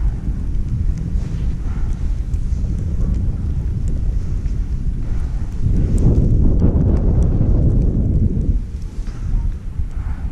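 Wind rumbling on a GoPro Hero5's microphone while skiing downhill, mixed with the sound of skis sliding on snow. It swells louder for a few seconds past the middle, then eases.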